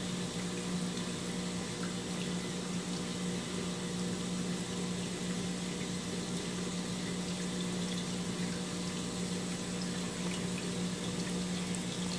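Steady hum of an aquarium system's water pump with water running through it: an unchanging low tone over a constant hiss of flowing water.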